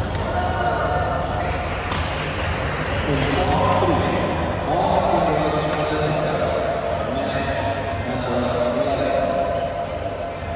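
Busy badminton hall ambience: a murmur of many voices over a steady low hum, with sharp knocks of rackets hitting shuttlecocks from the courts every second or so.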